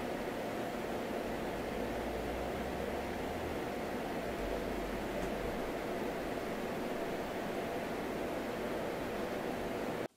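Corsair One i500 compact gaming PC's cooling fans running, a steady whoosh of airflow with a faint hum in it. The noise is the same with the fan cables swapped as with the stock connections.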